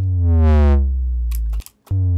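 Serum synth sub boom: a deep bass note whose pitch drops sharply at the attack and settles into a sustained low rumble, its tube distortion adding downward-sweeping overtones. It is cut off about a second and a half in, and a second identical boom starts just before the end.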